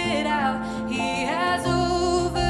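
Live worship song: sung vocals over acoustic guitar, electric guitar and cajon, with a fuller low end coming in near the end.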